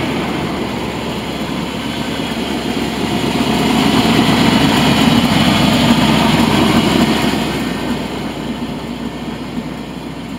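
Chevrolet medium-duty truck engine idling steadily with a low rumble, growing louder a few seconds in and easing off again near the end.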